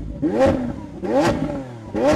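Car engine revving in repeated blips, each one rising in pitch and falling back, about one every 0.8 seconds, as a sound effect in a logo intro.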